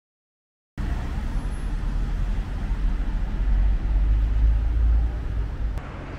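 City street traffic noise, a steady low rumble that starts abruptly about a second in.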